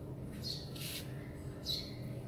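Two short, high chirps about a second apart, a bird calling, with a brief hiss between them over a faint steady hum.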